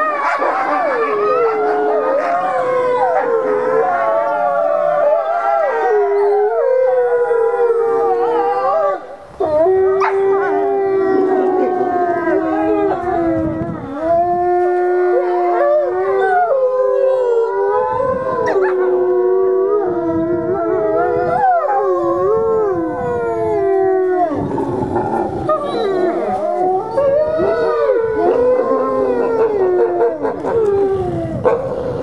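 Several wolves howling together in a chorus: long overlapping howls at different pitches that rise and fall, with a brief break about nine seconds in.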